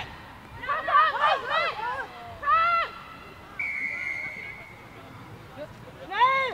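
Players shouting to each other on a rugby pitch, then one referee's whistle blast of about a second, a little past halfway, dropping slightly in pitch as it fades.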